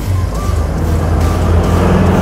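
Subaru Impreza's flat-four engine drawing nearer and growing louder as it accelerates, under a rock music soundtrack.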